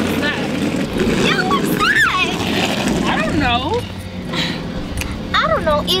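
Girls' voices talking in short bursts over a steady low rumble of street noise.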